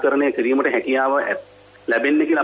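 Speech: a person talking in Sinhala with a radio-broadcast sound, breaking off briefly past the middle and then going on.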